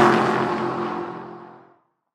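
Logo-intro sound effect: a whoosh with ringing, pitched tones, loudest at the start and fading away to nothing just before the end.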